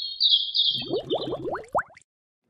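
A short cartoon-style transition sound effect: a high warbling whistle, then a quick run of about seven rising swoops that speed up and stop just before the end.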